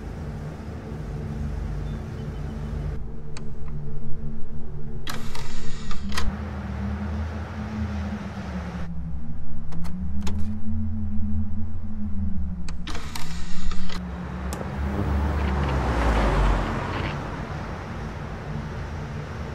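A low mechanical hum that slowly wavers up and down in pitch, with two short whirring bursts about five and thirteen seconds in, and a swell of rushing noise near the end.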